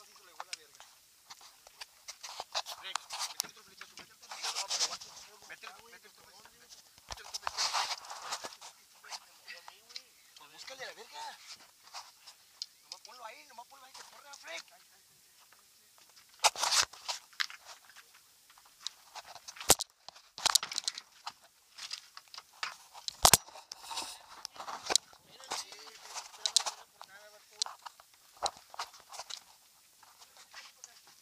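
Irregular water splashing from a gar shot with a bowfishing arrow as it thrashes on the line beside the boat, mixed with several sharp knocks against the boat, the loudest about two-thirds of the way through.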